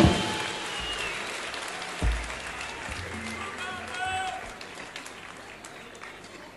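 A live drum-kit performance ends on a last hit. A fading wash of applause follows, with a low thump about two seconds in and a brief voice near the middle.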